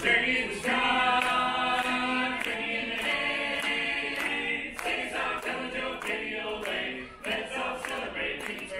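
An a cappella vocal group singing in close harmony.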